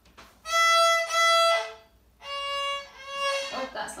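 A young beginner's violin playing short bowed notes: a higher note bowed twice, then a note about a step lower bowed twice, with brief gaps between strokes.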